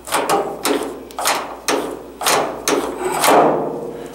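Volkswagen Beetle door handle and latch being worked over and over: a series of sharp metallic clicks and clacks, about two a second, some with a short ringing tail. The latch is working properly with the handle refitted.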